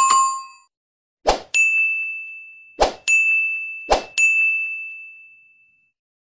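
Subscribe-animation sound effects: a bell-like ding, then three pops, each followed by a high chime. The last chime rings out and fades over about a second and a half.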